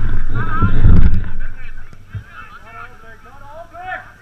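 Football players shouting and calling across the pitch, the voices distant and unclear. A heavy low rumble on the microphone dominates the first second and a half.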